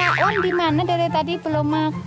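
Background music for a comedy skit: a high-pitched, cartoon-style voice sings wobbling, sliding notes and then a few held notes over a pulsing bass line.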